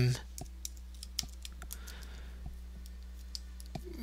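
Computer keyboard being typed on: irregular light key clicks, over a faint steady electrical hum.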